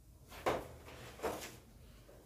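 Two short handling noises, scrapes or knocks: the first and louder about half a second in, the second about a second and a quarter in.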